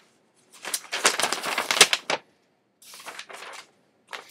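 A paper letter being unfolded and handled, rustling and crackling in a loud burst of about a second and a half, then a quieter rustle about three seconds in.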